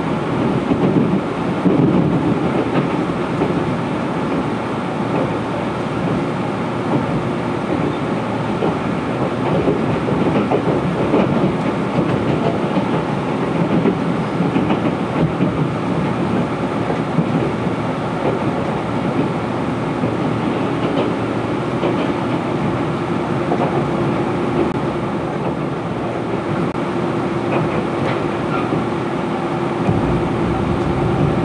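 Running noise inside a 485 series electric train car: steady wheel-on-rail rumble with occasional rail-joint clicks as it approaches a station. A steady hum comes in during the last several seconds.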